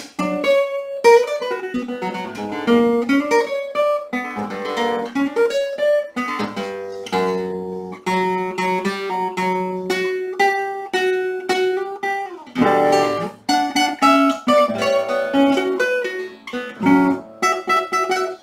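Solo classical guitar played fingerstyle: a continuous flow of plucked notes and chords on nylon strings.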